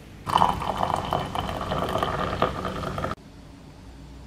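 Liquid being poured into a cup, its ringing tone rising slightly as the cup fills. It starts just after the beginning and cuts off abruptly about three seconds in.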